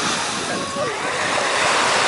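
Small waves breaking and washing up a pebble beach, a steady rushing surf.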